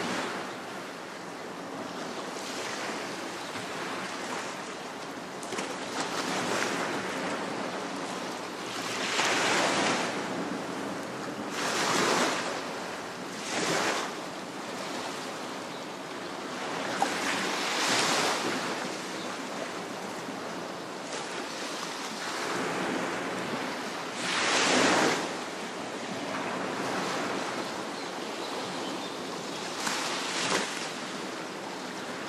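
Waves washing onto a coral reef shore: a steady wash of surf, with a louder wave breaking and receding every few seconds.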